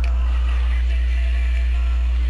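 Steady low electrical hum on the recording, with faint hiss above it.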